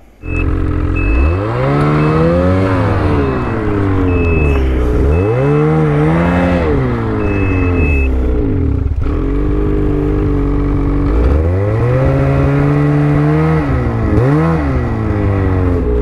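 Ski-Doo Summit X 850 two-stroke snowmobile engine catching right at the start, then revved again and again in reverse, its pitch climbing and falling several times as the stuck sled tries to back out of deep snow. A high short beep repeats through the first half, the reverse warning.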